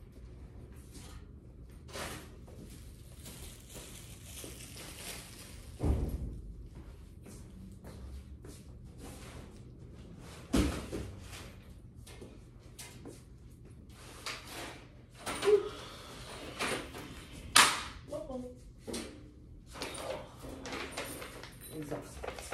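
Thuds and knocks of boxes and objects being moved and set down in a room: two heavy thumps about six and ten seconds in, then a run of sharper knocks and clacks in the second half, the sharpest a little before the end.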